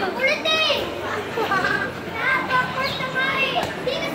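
Children's voices chattering and calling out, high-pitched and continuous.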